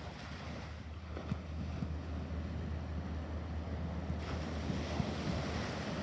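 Small ocean waves breaking and washing up a sandy beach, the hiss of the surf growing louder about four seconds in, with wind buffeting the microphone as a steady low rumble.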